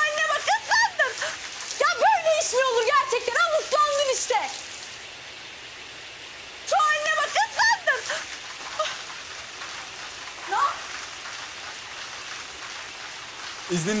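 Water spraying from a broken wall pipe in a steady hiss, with a man and a woman shouting over it in the first few seconds and again about seven seconds in.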